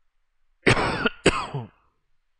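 A man coughing to clear his throat, two coughs about half a second apart.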